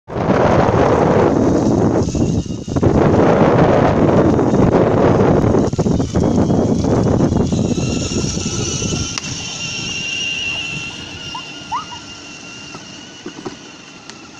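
Battery-powered children's ride-on toy truck driving on concrete: its plastic wheels rumble and its electric motor whines. The sound is loud up close, then fades over the last few seconds as the truck moves away.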